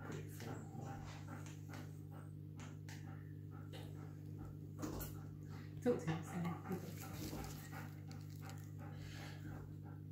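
A small dog whimpering a few times, loudest around six seconds in, over a steady low hum.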